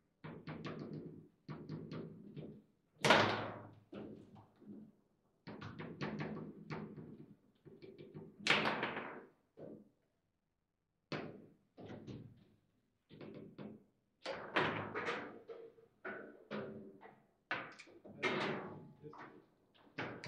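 Foosball table in fast play: quick runs of clacks and knocks as the ball is struck by the plastic players and hits the walls, with rods jolting against their stops. The two loudest strikes, hard shots, come about three seconds in and again about eight and a half seconds in, and a goal goes in during the second half.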